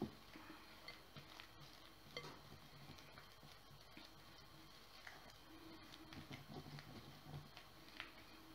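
Faint stirring: a spatula working a crumbly flour, egg and lard dough mixture in a glass bowl, with soft scrapes against the glass.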